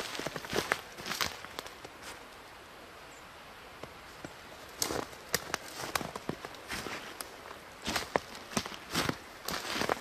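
Footsteps crunching through snow over dry leaf litter, in an uneven walking rhythm. The steps stop for about two seconds a couple of seconds in, then resume.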